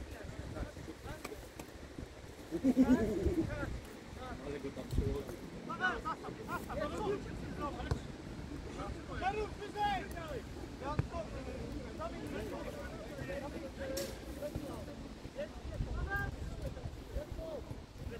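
Footballers' voices shouting calls to each other across the pitch, with a louder shout about three seconds in, over wind rumble on the microphone. A single sharp knock sounds near the end.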